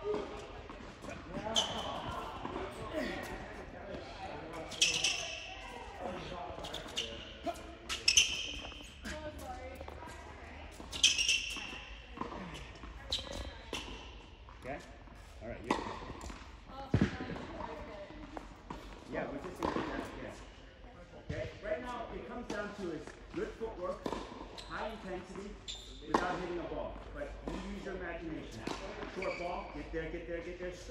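Tennis balls struck by rackets and bouncing on an indoor hard court, irregular knocks throughout, echoing in a large hall, with a few short high squeaks.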